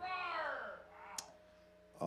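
A wordless voice sliding down in pitch for under a second, followed by a single short click.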